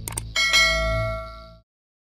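Subscribe-animation sound effect: two quick mouse clicks, then a bright bell ding that rings and fades away within about a second and a half.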